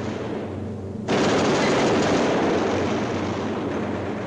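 A sustained burst of machine-gun fire starts suddenly about a second in, over the steady drone of a B-17 bomber's engines, and eases off toward the end.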